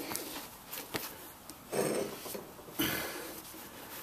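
Cloth shop rag rubbing over a greasy metal trailer wheel hub, two wiping strokes about a second apart, with a light tick about a second in.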